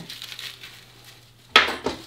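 Handling noise from a tourniquet: faint rustling of its nylon strap and plastic windlass, then a short clatter near the end.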